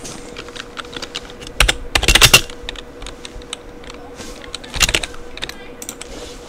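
Typing on a computer keyboard: a run of irregular key clicks, loudest in a quick flurry about two seconds in and again just before five seconds, over a faint steady hum.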